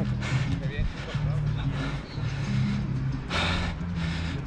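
Outdoor football-pitch ambience: faint shouts of players over a steady low rumble, with a short loud rush of noise about three and a half seconds in.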